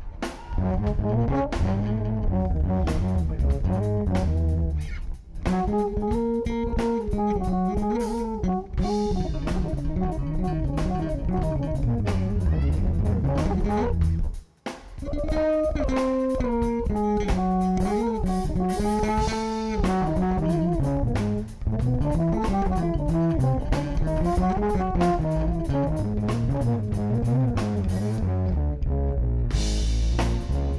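Electric bass guitar playing a melodic solo line with a drum kit keeping time, amplified through an Ampeg bass amp; the music breaks off for an instant about halfway through.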